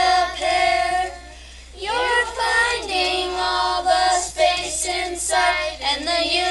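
A class of children singing a math song about the area of a rectangle, holding sung notes with a short pause about a second in before the singing picks up again.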